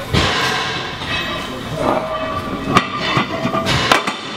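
Weight plates being loaded onto a push sled (prowler), with metal clanks of plate on plate and post; a sharp clank near three seconds in and another just before the end.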